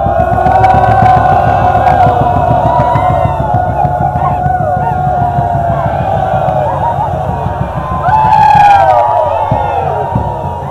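A large group of men chanting in unison in a drawn-out Naga folk chant, many voices holding and sliding in pitch together, with whoops and yells breaking in and a low rumble underneath. It swells louder about eight seconds in.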